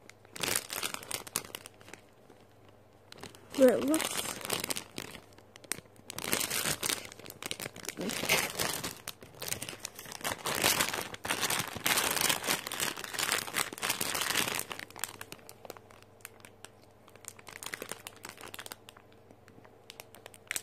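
Plastic packaging crinkling and rustling as it is handled and pulled open, in irregular bursts that are heaviest in the middle and die down about three-quarters of the way through. A brief voice sound comes about four seconds in.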